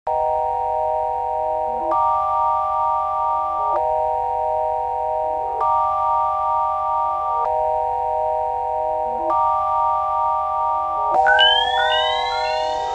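Intro of a trap instrumental: sustained synthesizer chords that change about every two seconds over a steady low bass, with a few short notes between the changes. In the last second, rising sweeps come in.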